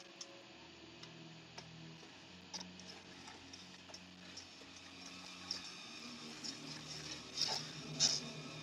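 Faint film soundtrack: low sustained music notes under scattered clicks and light knocks, roughly one every second or so, with the loudest cluster a bit after seven seconds in.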